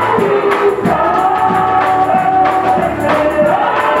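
Congregation singing a gospel song together, with hand-clapping keeping a steady beat.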